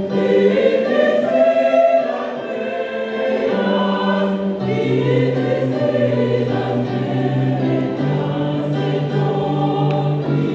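A choir singing gospel music in several parts, with held low notes underneath that change every couple of seconds.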